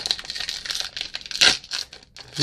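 Baseball card pack wrapper being torn open by hand, crinkling throughout, with one louder rip about one and a half seconds in.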